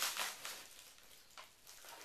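Faint rustling and crinkling of a padded paper mailer being handled and looked into, with a small click about one and a half seconds in.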